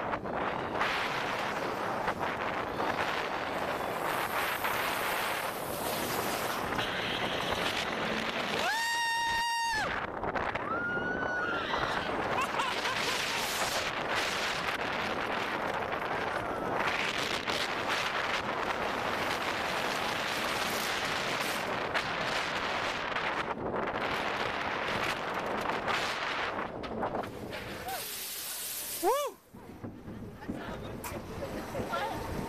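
Cheetah Hunt roller coaster ride heard from the front seat: a loud, steady rush of wind and train noise, with a rider's long held yell about nine seconds in and a shorter one just after. The rush dies down near the end as the train slows.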